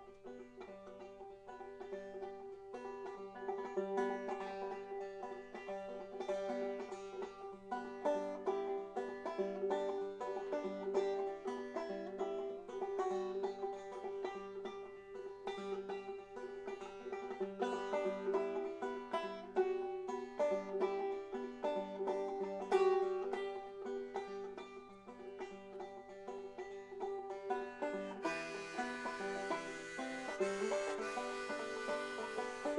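A banjo played solo in a steady picked pattern, with one high drone note ringing under the changing melody notes: the instrumental opening of a song.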